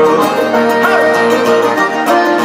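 Live Irish folk music: a button accordion plays a lively melody over strummed acoustic guitar, in an instrumental passage between sung verses.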